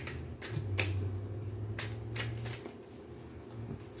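Tarot cards being shuffled and handled, with about half a dozen short, sharp card flicks and snaps spread through the few seconds, over a faint steady low hum.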